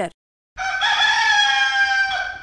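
Rooster crowing: one long crow starting about half a second in, after a brief silence.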